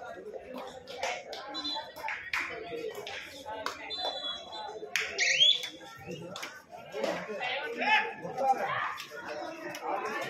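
Voices of kabaddi players and onlookers calling out during play, with scattered sharp claps and slaps. A short high call rising in pitch about five seconds in is the loudest moment.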